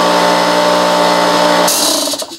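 Bosch oil-free pancake air compressor running loud and steady, then shutting off suddenly near the end with a short hiss of released air.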